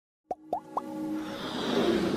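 Animated-logo intro sound effects: three quick rising-pitch pops, each a little higher than the last, followed by a musical swell that grows steadily louder.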